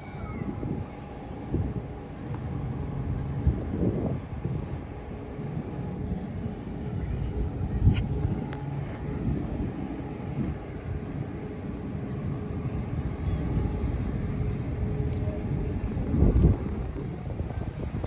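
Wind buffeting a phone microphone while walking outdoors, over a steady low mechanical hum, with louder bumps about eight seconds in and again near the end.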